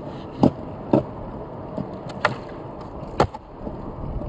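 Skateboard on concrete flat ground: a few sharp knocks of the tail popping and the board landing, about four in all spread over the few seconds, over a steady low background rumble, as the skater tries flat-ground tricks such as a switch pop shove-it.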